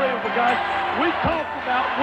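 A man's voice from an old radio broadcast recording, low and muffled, over a noisy, worn-tape background.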